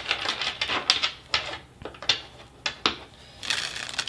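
Tarot cards being shuffled by hand: a quick run of card flicks and snaps, then a few separate sharper clicks.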